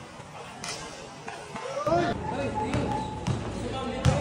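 Basketball thudding on a concrete court, a few sharp knocks in the first two seconds, then players and onlookers shouting, louder from about two seconds in.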